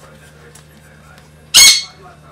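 A single short, loud, high-pitched squawk about one and a half seconds in, over a faint steady hum.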